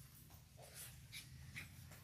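Near silence: room tone with a low hum and a few faint, short scratchy sounds.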